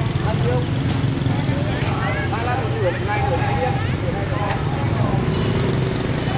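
Street market ambience: several people talking in the background over a steady low hum of motor traffic, with a few sharp clicks.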